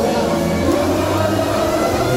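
Loud live party schlager music through a PA system, with a steady bass line and a voice over it.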